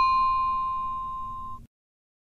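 A single bell-like ding ringing out and fading, a clear high tone with a shimmer of higher overtones. It cuts off abruptly about a second and a half in, leaving dead silence.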